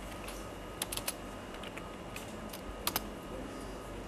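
Computer keyboard keystrokes, a few scattered clicks with louder clusters about a second in and near three seconds, as a terminal command is retyped and entered.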